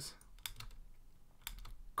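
Computer keyboard keys being tapped: a few quick light clicks in two short clusters, about half a second in and again near the end.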